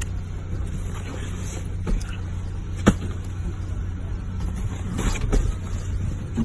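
Steady low rumble of a car heard from inside the cabin, with a few light clicks and one sharper click about three seconds in.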